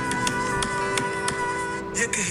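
Recorded Moroccan music played from a phone: sustained notes over a regular beat of sharp percussive strikes.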